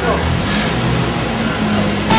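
A minibus engine running close by with a steady low hum, and faint voices talking in the background.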